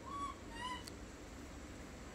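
Baby macaque giving two short coo calls in quick succession in the first second, the second slightly rising in pitch.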